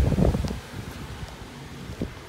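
Rumbling, rustling handling noise on a handheld camera's microphone as the camera operator climbs out of the car, loudest in the first half second, then settling to a low steady hiss.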